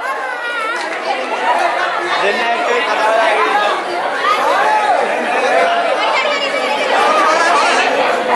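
Crowd chatter: many people talking and calling out at once in a large hall, no one voice standing out.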